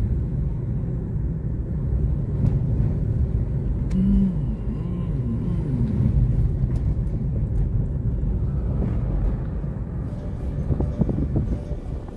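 Car driving at low speed, heard from inside the cabin: a steady low rumble of engine and road noise.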